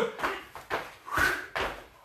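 Feet and hands landing on rubber gym flooring during squat jumps and squat thrusts: a few dull thuds, about one every half second.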